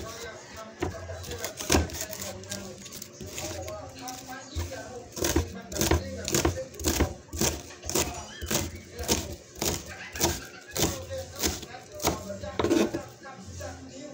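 Kitchen knife chopping vegetables: sharp, even strikes about two a second, growing regular from about five seconds in and stopping near the end.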